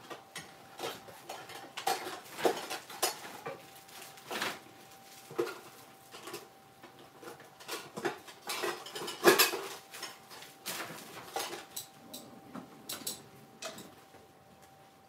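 Irregular clinks, taps and rattles of hard craft items being handled and set down, with the loudest cluster about nine seconds in. A faint steady tone runs underneath.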